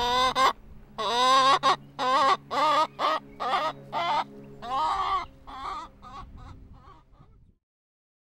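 Domestic hen cackling: a quick run of a dozen or so pitched calls, the first few long and loud, then shorter and fainter until they stop near the end.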